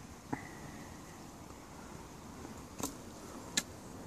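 Three sharp clicks or snaps over faint background noise: one about a third of a second in, which leaves a brief high ring, and two more in the second half.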